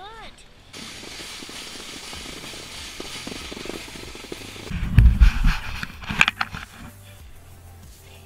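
Plastic sled hissing steadily as it slides over snow, then heavy thumps and a sharp clatter about five to six seconds in as it bumps and tips over into the snow.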